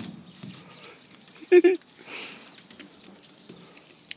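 A dog's claws scraping and clicking on icy snow as it scrambles about, with a person's short laugh about a second and a half in, the loudest sound.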